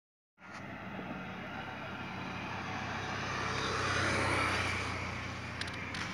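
A road vehicle going past on the bridge, its engine and tyre noise swelling to a peak about four seconds in and then fading.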